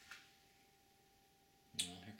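Faint room tone with a soft click near the start. Near the end comes a sharp click, and right after it a low voice begins.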